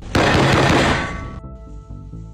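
A sudden loud blast of noise lasting about a second and dying away, over background music that carries on with steady held notes.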